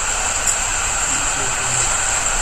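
Steady background noise of the recording, a constant hiss with a high-pitched whine, with no distinct events.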